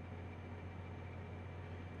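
Faint steady low hum with a light even hiss, unchanging throughout.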